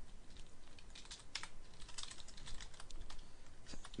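Typing on a computer keyboard: a few faint, irregular keystroke clicks as a short line of text is entered in a text editor.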